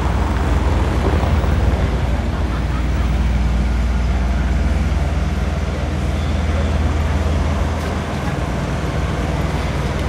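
Steady low rumble of city street traffic, with passers-by talking faintly.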